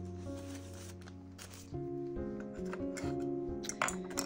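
Soft instrumental background music with held notes that change about two seconds in. Over it come a few light rustles and taps of a paper journal and its pages being handled.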